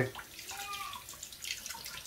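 Kitchen tap running, the water splashing over hands rinsing toheroa meat in a stainless steel sink.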